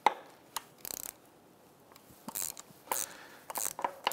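Socket and ratchet wrench working a small ground-strap bolt on an outboard powerhead: a few irregular sharp metallic clicks and short scrapes as the socket is seated on the bolt and the ratchet is worked.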